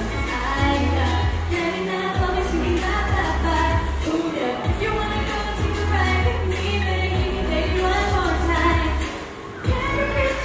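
A girl singing a pop song through a microphone over amplified backing music with bass and a steady drum beat; the music drops away briefly near the end.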